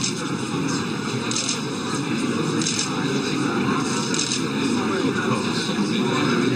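Steady background murmur of voices and room noise at a press photo call, broken by several short bursts of rapid clicking typical of press camera shutters.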